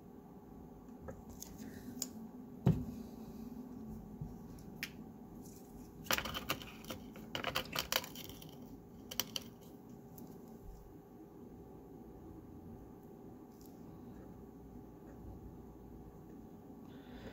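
Small sharp clicks and taps from hands handling small jewelry-making tools on a work surface: a single louder knock a few seconds in, then a quick flurry of light clicks a little past the middle, over a faint steady room hum.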